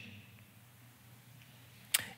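Quiet room tone picked up by a headset microphone, with one short, sharp click near the end.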